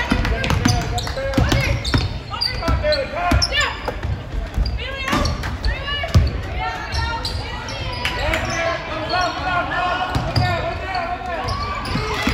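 Basketball dribbled on a hardwood gym floor during play, with repeated thumps, under the calls and shouts of players and spectators echoing in a large gym.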